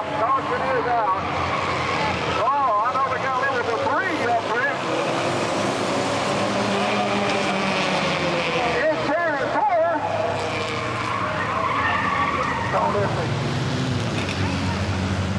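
Front-wheel-drive race cars on track, with tires squealing in several short warbling bursts over the steady drone of the engines.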